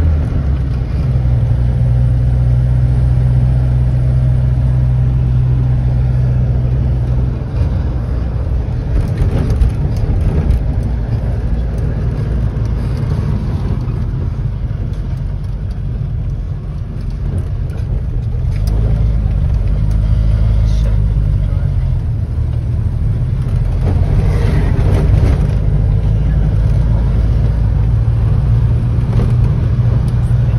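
The Rover P4 80's four-cylinder engine running while driving, heard inside the cabin together with road noise. The engine note is steady and shifts a couple of times as the car changes speed, about a third of the way in and again past the middle.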